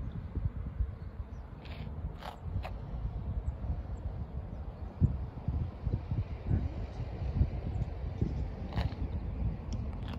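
Wind buffeting the microphone: an uneven low rumble with irregular gusty thumps, and a few faint short higher sounds about two seconds in and near the end.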